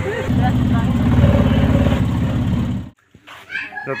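Engine of a moving road vehicle running steadily, heard from on board. It cuts off abruptly about three seconds in.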